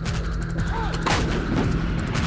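Heavy artillery-like gunfire with one sharp crack about a second in, over a steady low drone.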